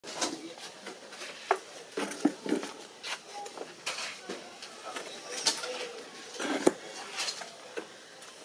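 Irregular sharp clicks and light clattering knocks, a few a second with no steady rhythm, over faint voices.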